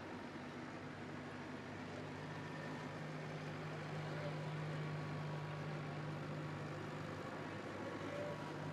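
Farm tractor engine running steadily as it tows a track harrow past, its low hum growing louder from about two seconds in.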